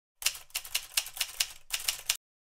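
Typewriter keystroke sound effect: a quick run of about ten sharp key strikes, roughly five a second, that stops suddenly near the end.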